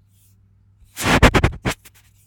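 A quick, loud run of scratchy rubbing noises, about six strokes in under a second, starting about a second in.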